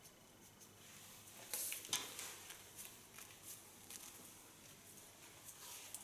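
Faint, short cutting strokes of a corded heated cutting tool through wet hair: a few scattered snips and slicing sounds, the clearest about one and a half to two seconds in.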